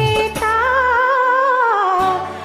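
A voice humming a long, wavering melodic line over the song's backing music. The bass drops out about halfway through.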